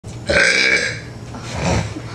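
A person burping: one long, loud burp lasting under a second, followed by a shorter, quieter sound near the end.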